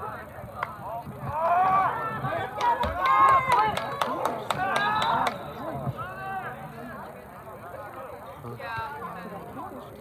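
Shouts and calls from players and people at a high school soccer game, loud and high-pitched with no words made out, with a quick run of sharp clicks about three to four seconds in.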